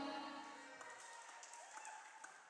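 The live band's final chord ringing out and fading away over about a second, leaving near silence.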